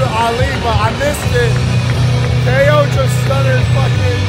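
Loud music over an arena sound system with a steady, deep bass. A man's voice close to the microphone chants along over it, with the crowd.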